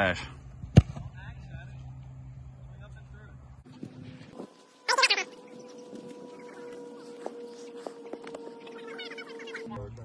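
A football kicked off a holder's hold on a field-goal attempt: one sharp, loud smack of the foot on the ball about a second in. Later there is a short burst of voice, then a faint steady tone.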